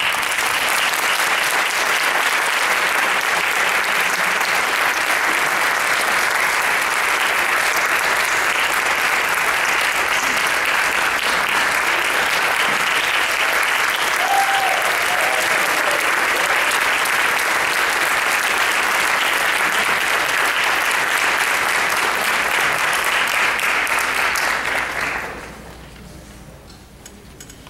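Audience applauding, steady and dense throughout, then dying away over the last second.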